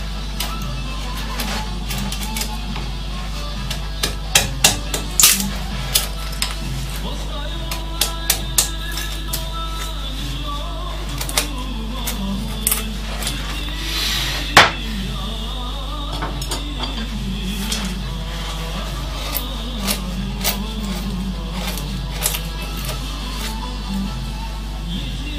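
Background music, and over it irregular sharp clicks and snaps of a carving chisel pushed by hand into a wooden board. The loudest click comes a little past halfway.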